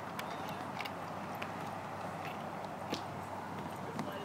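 A child's footsteps crossing playground mulch and stepping onto a wooden deck: a few soft, irregular steps, the firmest about three seconds in, over steady outdoor background noise.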